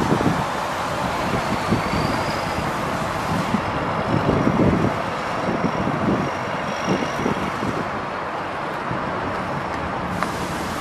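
Volvo 730 VHP motor grader's diesel engine running as the grader drives off across gravel, with wind buffeting the microphone. A faint high whine comes and goes.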